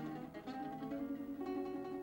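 Small acoustic guitar picked gently: a few single notes struck and left to ring, with a new note about one and a half seconds in.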